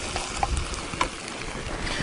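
Prawns and vegetables frying in a pan on a portable gas stove while a wooden spoon scrapes coconut cream from a tin and stirs it in, with two sharp clicks of the spoon, about half a second and a second in. Wind buffets the microphone in low gusts.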